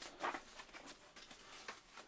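Faint rustling and crinkling of a large paper poster being folded by hand, a handful of light paper crackles, the clearest about a quarter second in.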